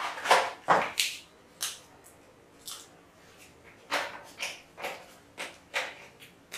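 Marker pen being drawn across a whiteboard: about a dozen short, squeaky scraping strokes with pauses between them, the loudest in the first second.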